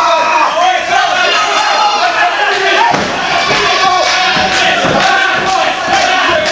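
Wrestling crowd shouting and yelling over one another without letup, with a few dull thuds about halfway through and again near the end.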